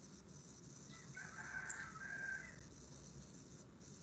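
A faint bird call, one call of about a second and a half, over the low hiss of an open meeting microphone.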